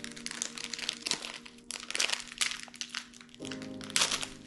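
Plastic cracker wrapper being pulled open and handled by hand, a dense run of irregular crinkles and crackles. Soft background music with steady held notes plays underneath.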